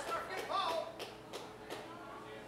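Indistinct talking in a room, with a few sharp taps, growing quieter.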